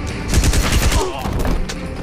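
Rapid automatic fire from an AR-style assault rifle, a dense run of shots that is loudest in the first second.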